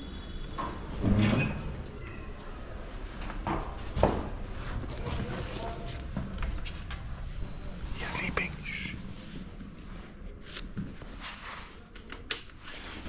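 Quiet movement and handling noise, with a sharp knock about four seconds in, under low speech.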